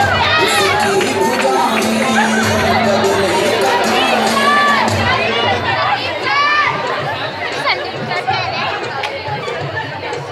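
A school audience shouting and cheering in a large hall: many overlapping voices with high-pitched yells, easing off in the second half.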